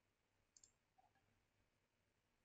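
Near silence with a faint computer mouse click about half a second in and a softer tick about a second in.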